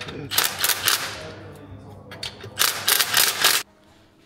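Cordless impact wrench hammering on an exhaust clamp nut in two rapid rattling bursts, the second one cut off abruptly near the end.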